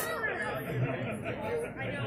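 Background chatter: several people's voices talking at once, low and indistinct.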